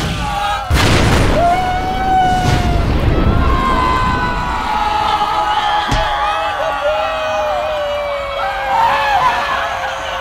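Fireball explosion sound effect: a sudden burst at the start and a bigger boom just under a second in. Then men yell and whoop in triumph in long, held shouts.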